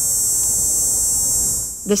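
Male cicada mating call: a loud, steady, high-pitched buzz that cuts off just before the end.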